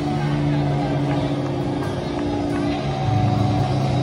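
Live screamo band playing loud distorted electric guitar and bass, holding long sustained notes that shift pitch twice.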